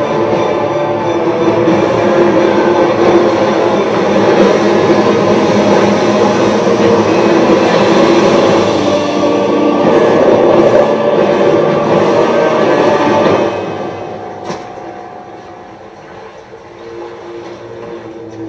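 Film soundtrack of a sailing ship diving beneath the sea: a loud, steady rush of churning water mixed with orchestral score, played back from a screen. About thirteen seconds in it drops away sharply to a much quieter stretch.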